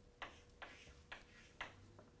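Chalk tapping sharply on a blackboard four times, about two taps a second, as short strokes are written.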